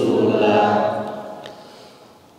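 A group of men chanting a Quran verse together in drawn-out melodic recitation. The phrase ends about a second and a half in and fades out over the last half second.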